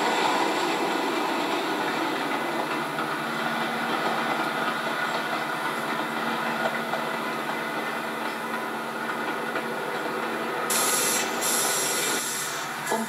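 Passenger train running along the track: a steady rumble of wheels on rails, joined a few seconds in by a low steady hum. A sudden loud hiss comes near the end.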